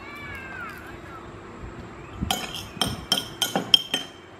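A metal spoon clinking repeatedly against a ceramic plate while rice is scooped up, about seven sharp ringing clinks in the last two seconds. A short high-pitched falling squeal comes at the very start.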